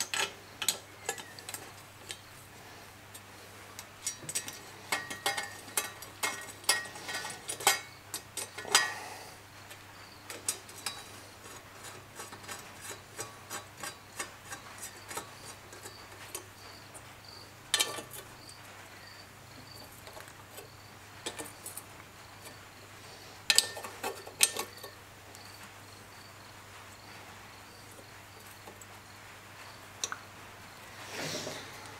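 Small hand socket ratchet clicking in bursts as bolts holding a number plate are tightened, with short runs of quick ticks and a few louder metal clicks. The clicking is densest in the first nine seconds and comes in shorter groups later.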